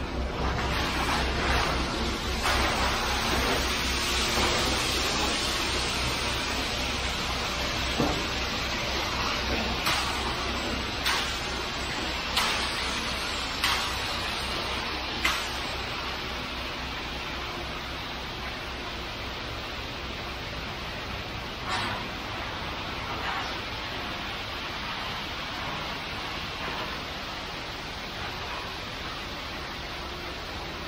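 Wet concrete sliding down a ready-mix truck's chute and spreading onto the slab, a steady rushing over the low pulsing hum of the truck running. A few short sharp knocks or scrapes of concrete rakes come between about ten and fifteen seconds in, and once more later.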